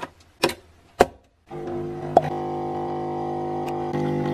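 Capsule coffee machine: a few sharp clicks as its lever is closed and the brew started, then about a second and a half in its pump starts a steady buzzing hum as coffee runs into the mug.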